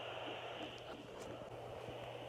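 Home fetal Doppler's speaker giving a steady static hiss over a low hum as the probe is moved over the lower belly, with a few faint crackles from the probe rubbing; it is still searching and no heartbeat is picked up.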